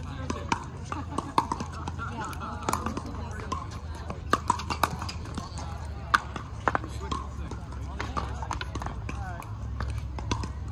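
Sharp hollow pops of pickleball paddles striking plastic balls and tapping together, scattered irregularly, over indistinct voices.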